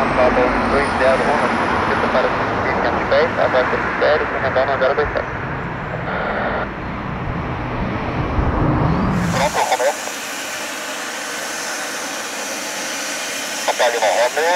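Gulfstream G550's twin Rolls-Royce BR710 turbofans running at low power, a steady rumble from across the airfield with a faint high whine and voices over it. About two-thirds of the way through, the rumble cuts off suddenly, leaving a steady hiss.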